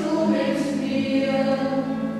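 A choir singing a church hymn in long held notes, with a brief sung consonant hiss about half a second in.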